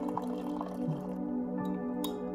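Soft background music, with hot water being poured from a stainless-steel kettle into a ceramic mug and trailing off into drips about a second in.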